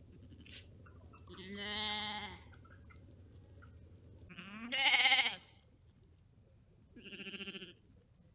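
Sheep bleating three times, a few seconds apart, each baa with a quavering pitch; the middle one is the loudest and longest.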